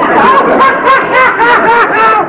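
Several people laughing loudly at once, in quick repeated ha-ha bursts.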